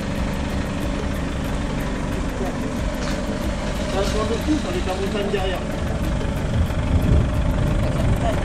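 Telescopic handler's diesel engine running steadily while it holds a large metal ring up on its boom.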